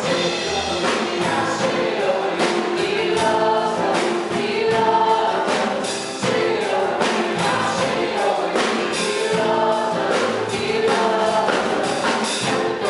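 Live worship song: a group of women singing in harmony, backed by piano and a drum kit with cymbals.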